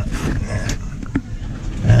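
Handling noise: a cloth rag brushing and rustling against the microphone, with two short clicks.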